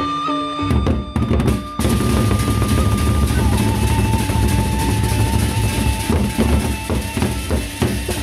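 Gendang beleq music: large Sasak double-headed barrel drums beaten with sticks come in about a second in and build into dense, loud, fast drumming. A single held high note keeps sounding over the drums and steps down in pitch about halfway through.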